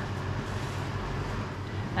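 A steady low mechanical hum with a faint hiss over it, holding level throughout.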